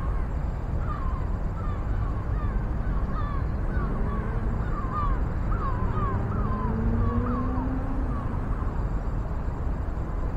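A bird calling in a run of short, quick notes, two or three a second, over a steady low rumble. Near the middle a faint hum rises slowly in pitch and fades out.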